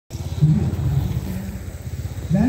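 A low, steady rumble, with a man's voice for about a second near the start.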